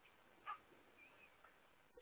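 Near silence: room tone in a pause of a voice recording, with one faint click about half a second in.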